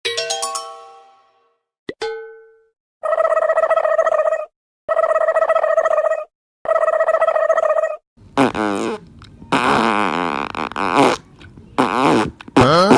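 Cartoon comedy sound effects: a quick run of ringing clicks and a single plucked note, then the same steady tonal effect three times over, each about a second and a half long. From about eight seconds in comes a run of cartoon fart sounds with wavering, sliding pitch.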